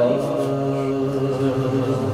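Men's voices chanting one long held note, steady in pitch, in devotional naat chanting.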